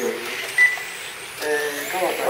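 Indistinct voices of people talking, with a short high electronic beep about half a second in.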